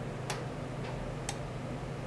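Three short, sharp clicks, the middle one weaker, over a steady low hum from running equipment.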